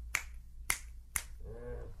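Finger snaps recorded binaurally through microphones at the ears of a dummy head: three sharp snaps about half a second apart, followed by a faint short murmur of a voice near the end.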